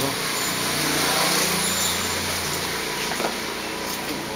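A motor vehicle's engine passing nearby, swelling to its loudest about a second in and then slowly fading.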